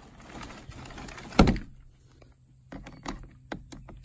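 Handling sounds of a cordless drill and a metal hose clamp while the drill is not running: one sharp knock about a second and a half in, then a few light clicks near the end.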